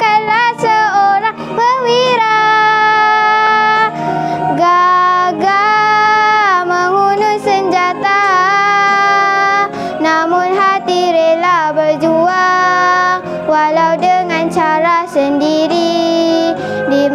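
A young girl singing a Malay patriotic song over a backing track, with long held notes that waver in pitch.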